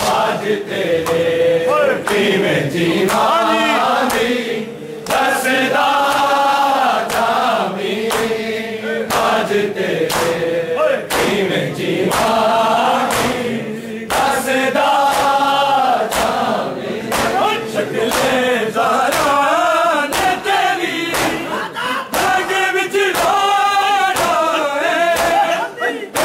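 A crowd of men chanting a Punjabi nauha (Muharram lament) in unison, with a regular beat of open-hand slaps on bare chests (matam) keeping time under the singing.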